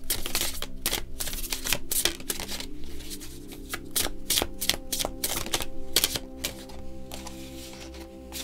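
Tarot cards being shuffled by hand: a rapid, irregular run of crisp clicks and riffles as the cards slap together, easing off near the end.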